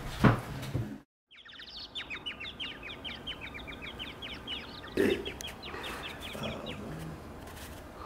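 Small birds chirping, a stream of short, quickly repeated chirps that begins after a brief moment of silence about a second in. A brief thump comes about five seconds in.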